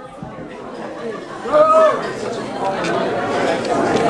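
Audience chatter: many voices murmuring together, growing louder, with one voice briefly rising above the rest about a second and a half in.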